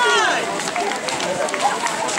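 Several people talking and calling at once at close range, with one voice calling out in a falling pitch right at the start.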